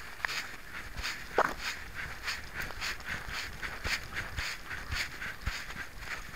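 A dog's walking steps heard through a camera worn on its collar: an even rhythm of short scuffs and rattles, about two to three a second, as the camera jostles with each stride. One brief, louder sound about one and a half seconds in.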